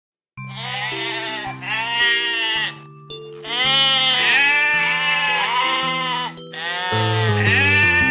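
Cartoon sheep bleating in several long, wavering bleats over background music of held chords.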